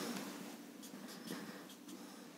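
Marker pen writing on a whiteboard: a few short, faint strokes.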